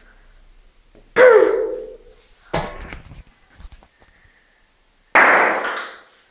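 A Kinder egg plastic capsule filled with baking powder and vinegar bursting open with a bang as the gas from the reaction builds pressure inside. There are several sudden knocks and pops, the loudest near the end.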